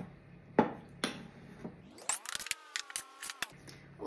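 Metal spoon scraping and clinking against a ceramic bowl while stirring dry oats and flour, with two sharp clinks near the start. It is followed by a brief pitched sound that rises and then holds for about a second and a half.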